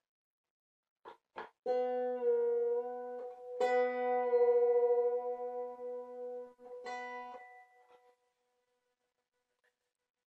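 Wire-strung Irish harp: two B strings an octave apart are plucked together three times, each pair ringing on with a long sustain while the lower B is tuned to the upper one with a tuning key. Two faint clicks come just before the first pluck, and the last pair fades away about two-thirds of the way through.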